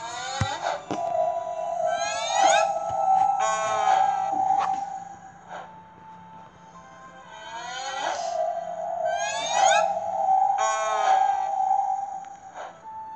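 Story-app background music and magical sound effect: a held tone with quick rising shimmering sweeps, in two swells with a dip in the middle.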